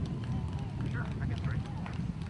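Indistinct talking of people in the background over a steady low rumble.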